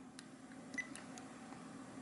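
Faint clicks of buttons being pressed on an Olympus WS-803 digital voice recorder, with a brief faint beep a little under a second in, over a low steady hum.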